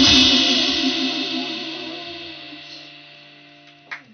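A live rock band's last chord of guitar, keyboard and cymbals rings out and fades steadily away over about four seconds, marking the end of the song. A low steady hum remains underneath.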